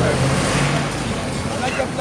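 Street traffic noise: a steady rush of passing vehicles with a low engine hum, and faint voices near the end.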